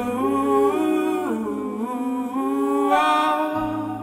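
Wordless humming of the song's melody, the notes gliding from one to the next, over acoustic guitar.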